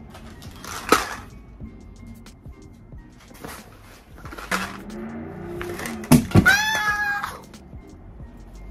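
Rustling and light knocks of a fabric backpack and small items being handled. About six seconds in, a sharp knock as an earbuds case falls onto her, followed by about a second of a wordless yelp. Background music plays under it.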